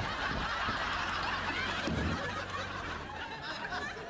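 Studio audience laughing, a crowd of many voices together that tapers off near the end.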